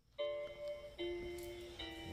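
Intro music: sustained pitched notes that start just after the beginning and change about once a second.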